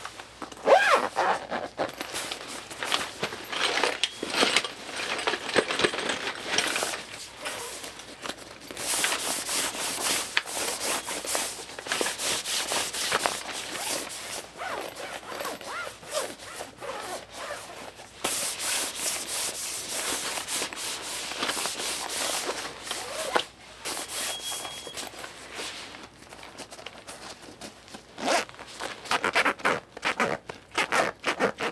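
Zipper on a black fabric case being worked open and closed close to the microphone, with the textured fabric rubbing and scratching between pulls.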